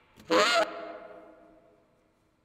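One short, loud honking note from the band closes the piece, wavering in pitch, then a single tone rings on and fades out within about a second.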